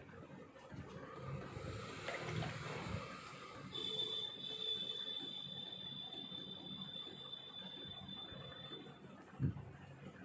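A rushing hiss that gives way to a steady high-pitched whistle, held for about five seconds before it stops. A single sharp knock comes near the end.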